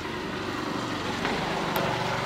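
A motor vehicle's engine running steadily, a low even hum.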